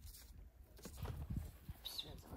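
A few faint knocks in quick succession about a second in: a kitchen knife striking a wooden cutting board as an onion is sliced. A short high chirp follows near the end.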